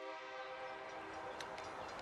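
Nathan K3LA five-chime air horn on a Kansas City Southern EMD SD70MAC locomotive sounding a steady chord of several notes. It starts abruptly and slowly fades.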